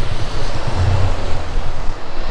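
Road traffic on a busy city street: a steady rush of tyres and engines, with a low engine hum swelling about a second in.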